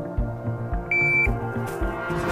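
A shot timer's start beep, one short high tone about a second in, the signal that starts the course of fire. Background music with a steady beat runs underneath.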